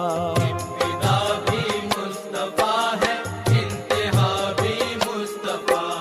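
Devotional naat music: a melody with wavering vibrato phrases over a regular low drum beat.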